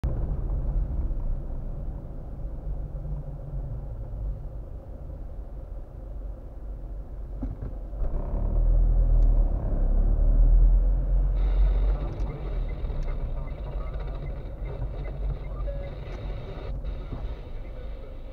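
Low rumble of a car driving, heard from inside its cabin. The rumble swells about eight seconds in and eases off about four seconds later as a city bus draws close alongside.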